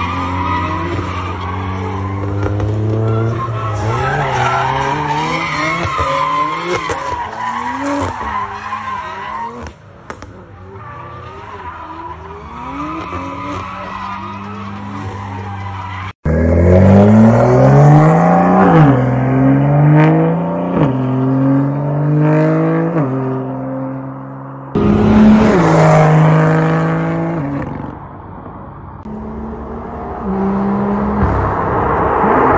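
BMW M2's turbocharged straight-six revving up and down repeatedly as the car drifts, with tyres skidding and squealing. The sound cuts abruptly twice, about a third and about five-sixths of the way through, as one drift clip gives way to the next.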